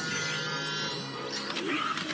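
Background music with a buzzing electronic sound effect of an incoming message on Ladybug's yo-yo, which works as her phone.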